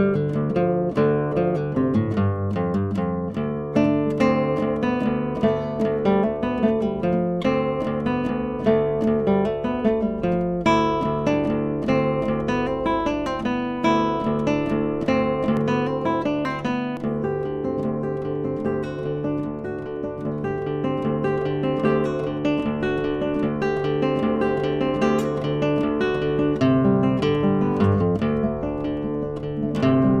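Solo classical guitar with nylon strings played fingerstyle: a continuous run of quick plucked notes over a steady bass line.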